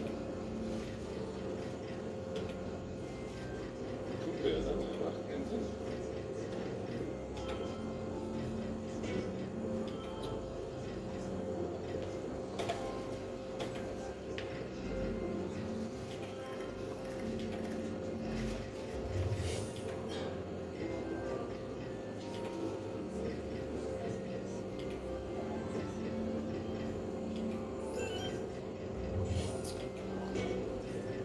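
Arcade video slot machine (Novoline Dolphin's Pearl) running through free games, giving out its electronic reel and jingle sounds over a steady tone, with muffled voices in the hall.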